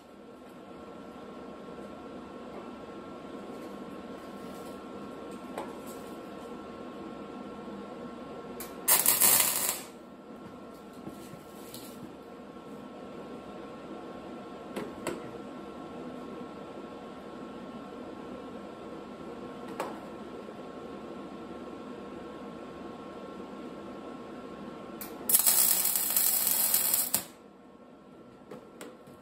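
MIG welder tacking steel: two short bursts of arc noise, one about nine seconds in lasting about a second and a longer one of about two seconds near the end, over a steady hum.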